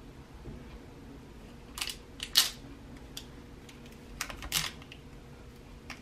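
Light clicks and crinkles as a sheathing-tape 'sticky foot' on a bamboo skewer is pressed down onto a loose bamboo skewer lying on a granite countertop: a pair of short clicks about two seconds in, and another pair a little after four seconds.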